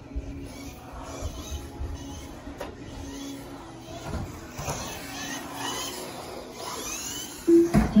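A Team Associated B74.1 4wd electric RC buggy running laps on the track, its motor giving a whine that rises several times as it accelerates. A short, loud tone sounds near the end.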